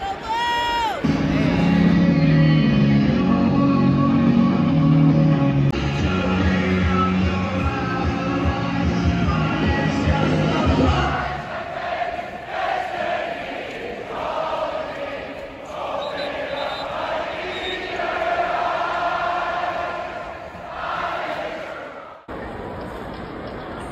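Loud music over a football stadium's public-address system, with a heavy stepped bass line. About eleven seconds in, the music gives way to a large crowd singing and cheering along.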